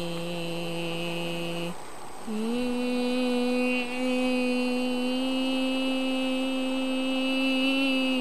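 A person's voice holding a long, steady wordless droning note. It breaks off about two seconds in, then comes back on a slightly higher note that slides up a little and is held.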